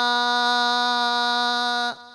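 A Buddhist monk's voice holding one long, steady sung note of a kavi bana verse chant, breaking off just before the end.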